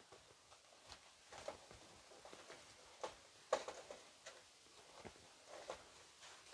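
Faint rustling and scraping of butter in its paper wrapper being rubbed around the inside of a metal baking tin, with a few light ticks, the clearest about three and a half seconds in.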